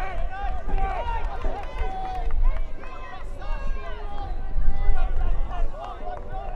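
Several people's voices at a football pitch calling and talking over one another, over a low rumble. The voices swell about five seconds in.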